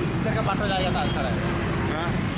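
Busy street traffic: a steady low rumble of passing cars, motorbikes and buses, with voices over it.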